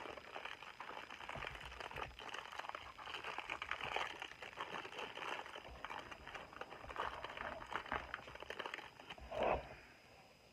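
Crinkling of a clear plastic snack-cake wrapper being handled and pulled open: a steady run of irregular small crackles, with a short louder sound near the end.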